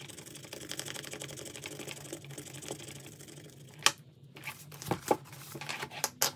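Metal scratcher tool scraping rapidly back and forth over a scratch-off circle on a laminated card, for about four seconds. It ends with a sharp tap and a few knocks.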